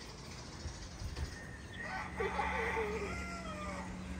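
An animal's wavering call, lasting about a second and a half and starting about two seconds in, over faint outdoor background noise.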